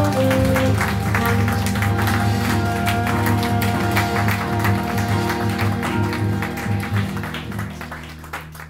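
Live band music from acoustic and electric guitars, saxophone, bass and percussion, with held notes over a steady beat, fading out gradually near the end.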